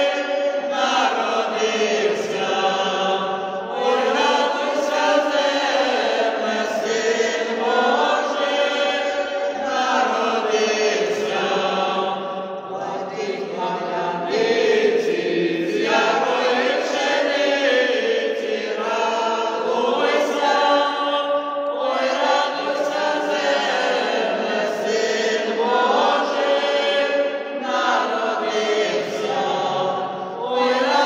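Small mixed vocal ensemble, mostly women with two men, singing a Ukrainian Christmas carol (koliadka) a cappella, in long phrases with short breaks between them.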